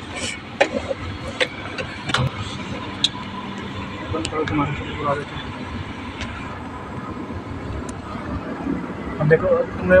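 Car cabin noise while driving slowly: steady engine and road noise heard from inside the car, with several sharp clicks in the first few seconds and faint voices in the background.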